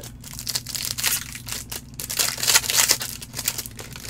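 Foil wrapper of a 2020 Bowman Chrome baseball card pack crinkling and tearing as gloved hands open it. It is a dense run of crackling, loudest in the second half.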